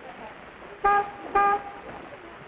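An old taxi's car horn sounding two short honks about half a second apart, each a flat, steady note.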